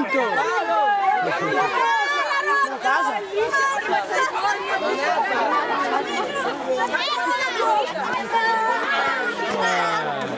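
Crowd chatter: many voices, mostly children's, talking and calling out at once in a dense, unbroken babble.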